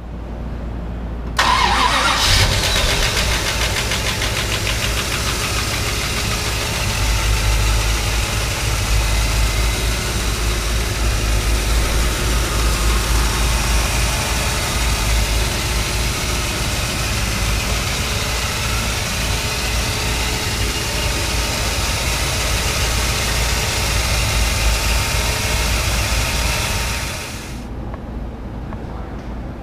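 A 1956 Chrysler Imperial's 354 cubic inch Hemi V8 is cranked with a rising whine about a second in, catches about two seconds in, and then idles steadily, the sound dropping a little near the end.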